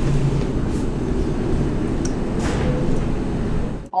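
Strong wind outside, heard as a steady low rumble with a faint hiss on top, which cuts off just before the end.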